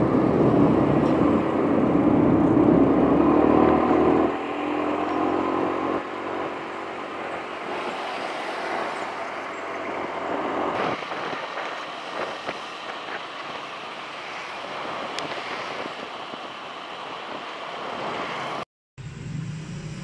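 Road traffic heard from a moving vehicle. For the first four seconds an engine runs close by with a rising note, then it gives way to a steady rush of traffic, tyres and wind. The sound drops out abruptly for a moment near the end.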